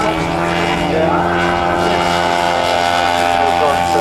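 Engine of a large radio-controlled model Fairey Swordfish biplane running at a steady pitch on its take-off run.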